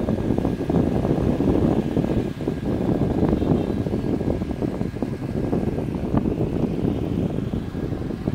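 Wind buffeting the microphone of a moving motorbike, over the running of the surrounding scooter and motorbike engines in dense street traffic.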